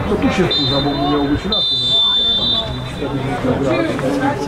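Referee's whistle blown twice, a short blast and then a longer, louder one, over players' and spectators' shouts: the whistle ending the first half.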